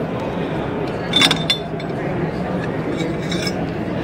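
A few sharp metal clinks with a brief ring about a second in, as the bent chrome pipe is worked out of the pipe bender's die and clamp. Steady crowd chatter runs underneath.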